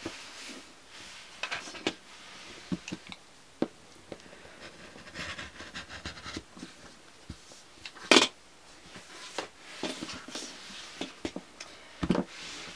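Rotary cutter slicing through a stack of eight layers of cotton fabric on a cutting mat, a soft rasping cut, amid small handling clicks. One sharp knock about eight seconds in.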